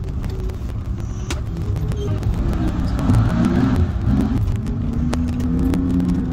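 Car driving, heard from inside the cabin: a steady low engine and road rumble, with a swell of tyre hiss about halfway through.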